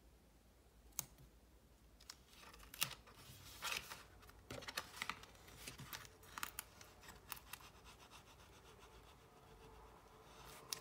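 Paper being handled and a bone folder scraping along a fold to crease it: quiet crisp rustles and scratchy strokes, with a sharp click about a second in.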